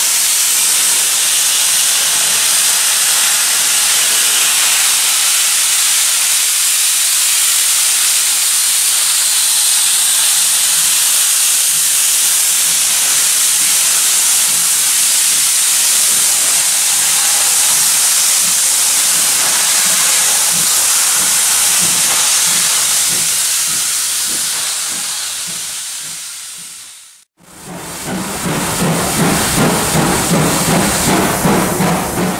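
Steady, loud hiss of steam escaping low around a steam locomotive as it pulls away, with faint low beats showing through late on. The hiss fades out near the end, and a rhythmic beat, probably music, begins.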